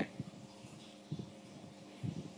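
A short pause in a man's sermon: faint room tone with a low steady hum and a couple of brief soft sounds.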